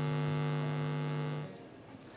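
Steady electrical mains hum, a buzz with many evenly spaced overtones, on the broadcast audio of a remote link that is carrying no voice: the commentator cannot be heard. The hum cuts off suddenly about one and a half seconds in.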